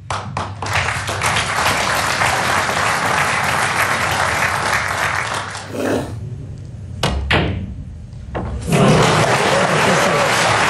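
Audience in a snooker arena applauding for several seconds. After a short lull, a cue strikes the cue ball with two sharp clicks of cue and ball on ball, and the applause starts again near the end.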